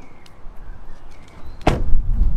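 A car door slammed shut once, near the end, with a sharp bang and a low thump.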